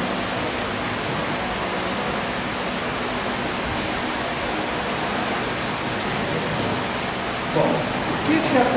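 Steady, even hiss of room background noise, with a man's voice starting near the end.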